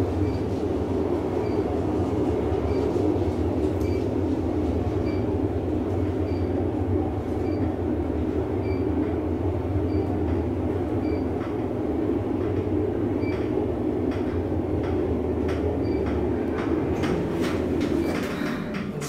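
Otis Elevonic traction elevator car travelling down the hoistway: a steady low rumble of the ride, with faint high blips about once a second. A run of clicks comes near the end as the car reaches its floor.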